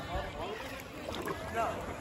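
Faint voices of people talking at a distance, over a steady low background of rippling water and some wind on the microphone.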